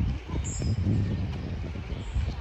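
Outdoor ambience in woodland: an uneven low rumble, with a short high bird chirp about half a second in.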